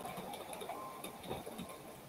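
Faint, irregular light clicks and taps of a computer keyboard being typed on, over quiet room noise.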